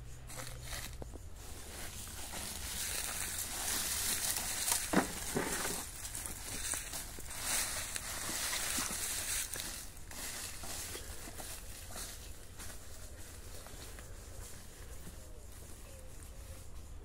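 Rustling and crunching in dry leaf litter as someone moves through it, loudest from about two to ten seconds in.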